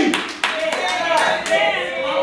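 Church congregation clapping, scattered claps, with voices calling out over it.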